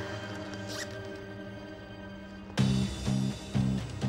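Soundtrack music with a held, sad-sounding chord. A short zip, a handbag zipper pulled open, comes just under a second in. About two and a half seconds in, the music switches to a louder section with a steady pulsing beat.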